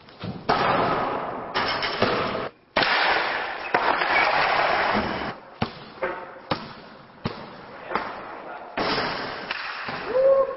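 Skateboard wheels rolling on a smooth skatepark floor, broken by sharp clacks and knocks of the board hitting the ground several times.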